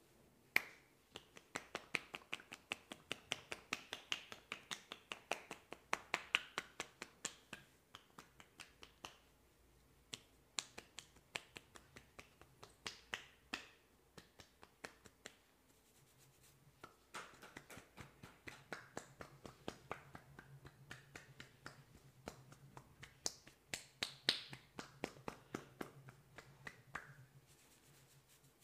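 Indian head massage tapping on the scalp: quick, sharp clicking strikes of the fingers on oiled hair, about three to four a second, in runs with a brief pause near the middle.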